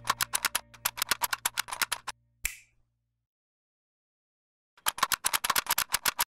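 Rapid run of sharp mechanical clicks, like keys typing, about ten a second for two seconds, closed by one separate click. After a silent pause a second run of clicks starts near the end.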